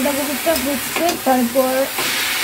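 Shredded cabbage sizzling in a steel kadai on a gas burner while a metal spatula stirs it, scraping and clicking against the pan. A wavering pitched sound comes and goes over the sizzle.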